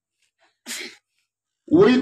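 A man's quick, sharp breath taken into a close microphone, lasting about a third of a second, with silence around it; his speech starts again near the end.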